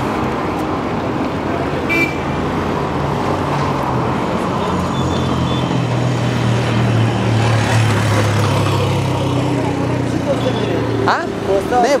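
Street traffic with the engine of a three-wheeled auto-rickshaw running close by; its hum grows louder in the middle and fades near the end. A brief high tone sounds about two seconds in, and voices come in near the end.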